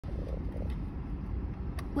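Steady low rumble inside a car's cabin with the engine idling.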